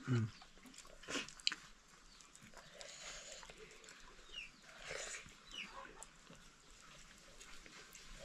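Faint animal sounds: a short, low, falling grunt right at the start and a few brief, high, falling chirps later on. Underneath are quiet sounds of eating by hand from a steel plate.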